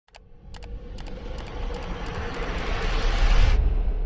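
Logo-intro sound effect: a rushing riser that swells in loudness over a deep rumble, with scattered sharp clicks that come faster as it builds. The rush cuts off suddenly about three and a half seconds in, leaving the rumble to die away.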